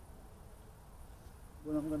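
Faint low background rumble without distinct events, then a man starts speaking near the end.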